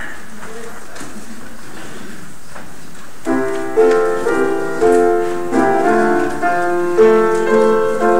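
About three seconds of room noise, then a piano starts playing the introduction to a hymn: struck chords in a steady, measured rhythm, each one dying away.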